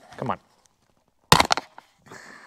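Plastic slider on an OEM Porsche 911 shifter base snapping off as it is twisted free: a quick cluster of sharp cracks about a second and a half in. It sounds like something breaking, but the part comes off intact.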